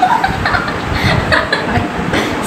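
Girls giggling and chuckling in short bursts.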